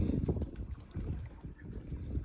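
Wind buffeting the phone's microphone: an uneven low rumble that rises and falls, with a few faint clicks.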